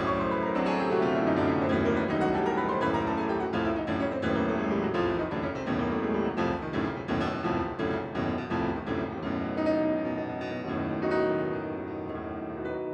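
Steinway concert grand piano played fast in a classical solo piece, with rapid runs sweeping down and up the keyboard; the playing grows softer near the end.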